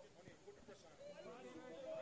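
Faint, distant voices of footballers shouting and calling to each other on the pitch, heard over low field ambience.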